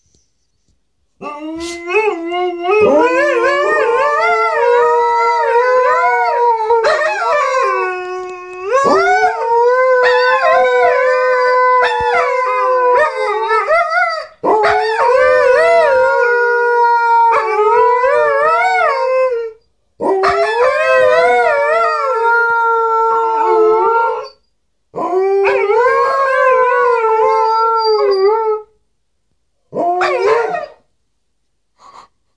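Two Alaskan malamutes howling together, their long wavering howls overlapping at different pitches and not quite in tune. The howling comes in several stretches of a few seconds, with short breaks between them.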